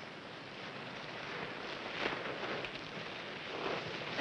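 Steady hiss with a few faint, brief rustles.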